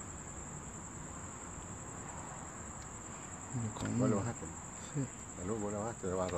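Crickets calling in a steady, unbroken high trill.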